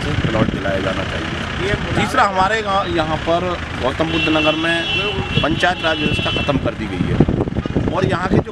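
A man speaking Hindi into a close microphone, with a steady hum of road traffic behind.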